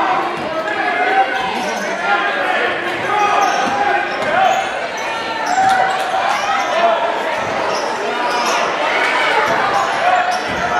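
Basketball dribbled and bouncing on a hardwood gym floor under the steady talk and calls of spectators and players, echoing in a large gymnasium.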